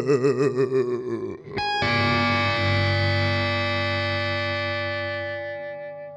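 Ending of a dark visual kei rock song: a held note with a wide, fast vibrato breaks off about a second and a half in. A final electric guitar chord is then struck and left to ring, fading away slowly.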